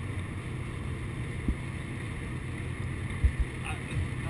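Steady low road and engine rumble inside an older Mercedes-Benz car cruising at highway speed, with a couple of brief low thumps.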